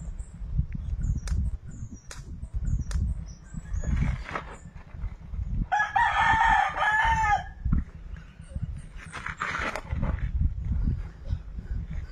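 A rooster crowing once, a long call of nearly two seconds about six seconds in, over a steady low rumble.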